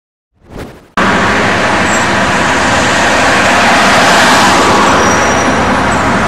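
A short countdown whoosh, then about a second in a loud, steady rush of road traffic noise cuts in suddenly.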